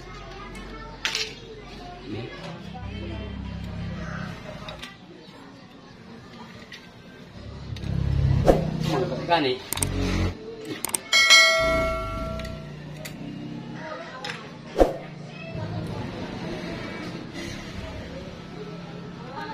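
A clear bell-like ding about eleven seconds in, ringing for about a second and a half, like the notification-bell sound laid on a subscribe-button animation. It comes just after a couple of sharp clicks, over a low, varying hum with a few more clicks from hand work on the clutch.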